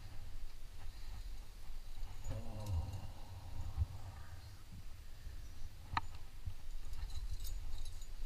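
Low rumble of movement and handling on a head-mounted camera's microphone, with a short voice-like call about two and a half seconds in and one sharp click about six seconds in.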